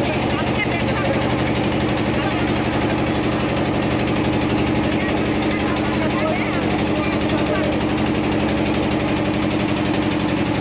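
An engine running steadily, a constant even hum, with people's voices faint underneath.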